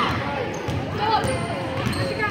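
A basketball being dribbled on a hardwood gym floor: several sharp bounces, the loudest about a second in, over spectators talking.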